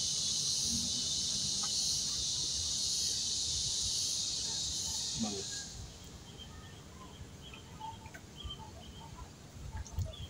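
A steady, high-pitched insect buzz that cuts off suddenly a little over halfway through, leaving only faint scattered chirps and ticks.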